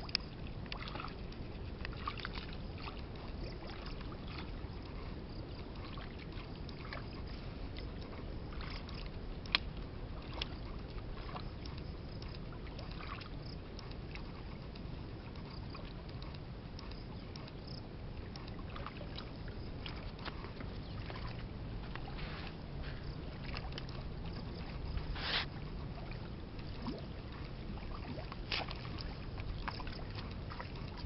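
Hands sloshing and splashing in shallow muddy ditch water, with scattered small splashes and sharper plops, the clearest about a third of the way in and again near the end, over a steady low background noise.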